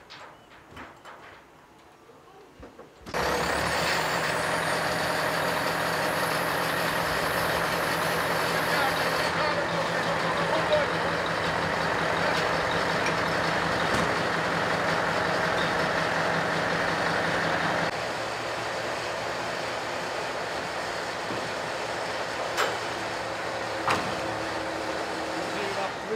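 A truck engine running steadily at raised speed, powering a truck-mounted loader crane as it lifts a section of a fairground ride. It starts suddenly about three seconds in and drops a little in level at about eighteen seconds.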